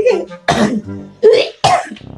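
Background music under three short, breathy vocal bursts from the players, coughing laughs, about half a second, a second and a quarter, and a second and three quarters in.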